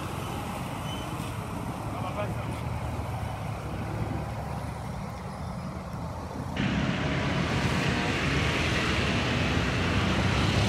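Road traffic: a steady low rumble of vehicle engines, which gets suddenly louder and hissier about two-thirds of the way in.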